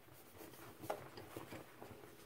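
A hand raking and squeezing through dry Ajax powdered cleanser gives soft, faint crunching and rustling of the powder. There are several short strokes, the sharpest about a second in.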